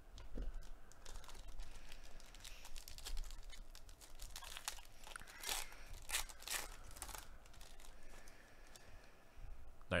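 Metallic foil wrapper of a Panini Mosaic baseball card pack being torn open and crinkled by gloved hands: irregular crackles and rips over several seconds.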